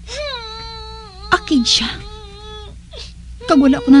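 A high human voice wailing in one long drawn-out moan, falling slightly in pitch, with a brief catch partway through; it stops a little under three seconds in.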